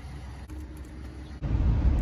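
Low, steady vehicle rumble, fairly quiet at first and then clearly louder from about one and a half seconds in.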